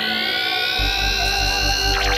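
Full-on psytrance electronic music: a synth sweep rises in pitch and levels off, and a pulsing kick and rolling bassline come in a little under a second in.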